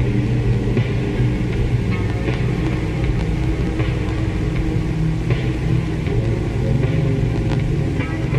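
Ambient music: a dense, murky drone low in pitch that holds steady, with faint crackles scattered through it.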